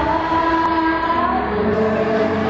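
A group of women singing together, one voice through a microphone, holding long sustained notes.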